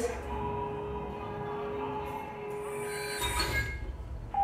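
Sci-fi film trailer soundtrack played over a hall's speakers: a steady, high sustained tone held under fainter drones, with a brief louder swell a little past three seconds in.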